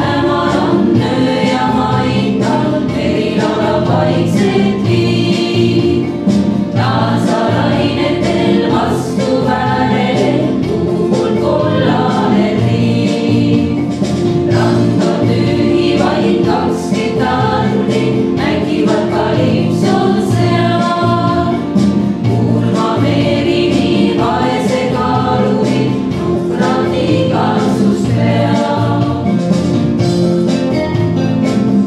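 A women's vocal ensemble of six singers singing together into microphones, a steady choral song with no break.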